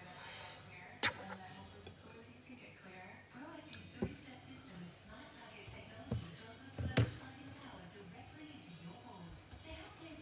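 Four sharp knocks of a spatula against kitchenware while whipped cream is spread on a cake, the loudest about seven seconds in. Background music and faint talk run underneath.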